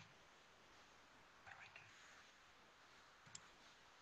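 Near silence: room tone, with a brief faint murmur of voices about one and a half seconds in and a single faint click near the end.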